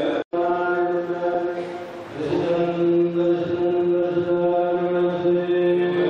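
Malankara Orthodox clergy chanting a liturgical hymn into a microphone, in long held notes with a change of note about two seconds in. The sound drops out for a moment just after the start.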